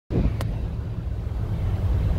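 Wind buffeting a phone microphone on an open ferry car deck, a loud, uneven low rumble, with a single sharp click about half a second in.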